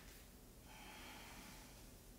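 Near silence with one faint breath, lasting about a second from midway through, from a person holding downward-facing dog after a plank sequence.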